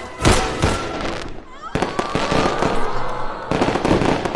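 A loud bang, then a string of sharp bangs and crackling: a firecracker-like sound effect that is left uncertain between gunshots and firecrackers celebrating victory.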